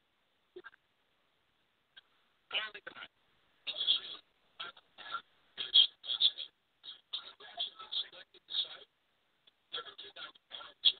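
Speech from a recorded clip being played back, starting about two and a half seconds in after a near-silent pause.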